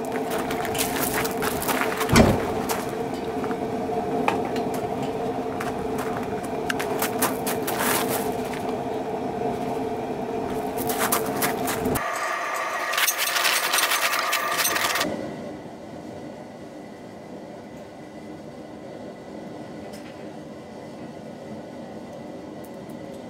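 A steady mechanical hum with many sharp clicks for about twelve seconds. The sound then changes abruptly twice and settles into the soft, even hiss and occasional pops of a wood fire burning in a steel fire pit.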